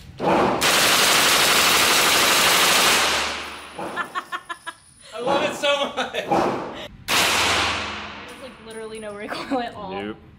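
Blackwater Sentry 12 12-gauge shotgun fired rapidly at an indoor range. The shots run together into about two and a half seconds of continuous, echoing gunfire. Another loud blast comes about seven seconds in and dies away in the room's echo.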